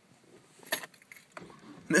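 Car keys jangling with a few light clicks and rattles, loudest about three quarters of a second in, while the engine is still off.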